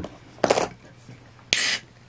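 A 330 ml can of IPA opened by its ring-pull: a short crack about half a second in, then a sharp pop with a brief hiss of escaping carbonation gas near the end.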